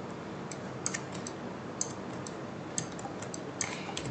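Computer mouse buttons and keyboard keys clicking: about a dozen short, sharp clicks at irregular intervals over a faint steady hiss, as the modifier keys and the mouse are worked in 3D modelling software.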